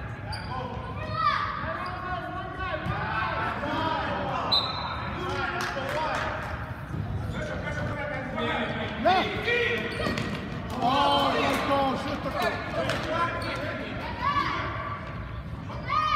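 Futsal ball being kicked and bouncing on a hard gym floor, sharp knocks scattered through, with children's and adults' voices calling out and echoing around the gymnasium.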